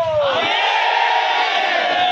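A crowd of protesters chanting a Hindi slogan in unison, loud; a single voice sliding down in pitch is heard at the start, then many voices join together about half a second in.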